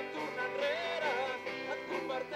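Live folk-pop band playing a song, voices singing a melody over guitar accompaniment.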